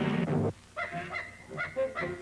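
Cartoon theme music: a loud held chord cuts off about half a second in, then a string of short, clipped notes at changing pitches follows, three or four a second.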